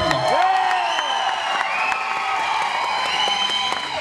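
Crowd cheering and applauding, with long shouts that rise and fall in pitch over the clapping.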